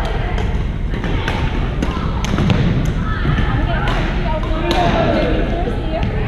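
Badminton rackets striking shuttlecocks in rallies across several courts: a string of sharp smacks, several a second, in a large gymnasium, over background chatter.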